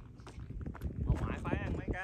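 Indistinct voices talking, starting about a second in, over irregular low knocks and thumps.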